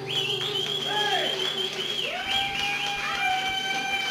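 Harmonica solo: held notes that bend down in pitch and back up, over a sustained acoustic guitar chord.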